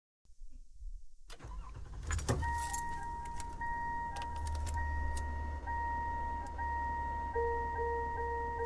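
Car sounds from the opening of the recorded song: a car's warning chime holding a steady tone over a low engine rumble, with keys jangling and a few clicks. The chime comes in about two seconds in, and a second, lower tone joins near the end.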